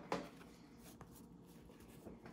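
Faint rustle of playing cards being handled, with a short soft sound just after the start and a light tick about a second in, over quiet room tone.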